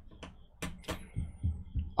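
A short pause between a man's sentences, filled with a few faint short clicks and soft low thumps.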